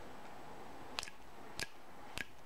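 Two short, sharp scrapes of a survival bracelet's metal striker against its ferro rod, about a second in and half a second apart, striking sparks.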